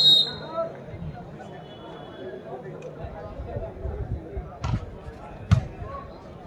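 A referee's whistle blows briefly at the start, then over crowd chatter a volleyball is struck twice, less than a second apart near the end, the second hit the loudest.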